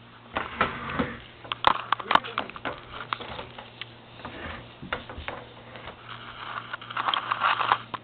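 A Saint Bernard breathing and sniffing right at the microphone, in hazy rushes that are loudest near the end, among many scattered clicks and knocks close by.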